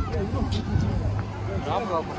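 People talking and calling out over the low, steady rumble of slow-moving street traffic.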